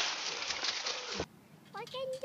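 Dry fallen leaves rustling and crunching as a small dog moves through them, with a short laugh. The sound cuts off abruptly about a second in; after a moment of near silence a faint voice begins.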